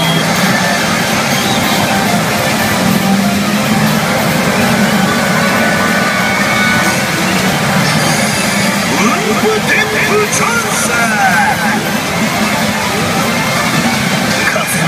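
A pachinko machine's electronic sound effects and music during a high-expectation effect sequence, over a steady loud din. A run of quick sweeping tones comes near the end.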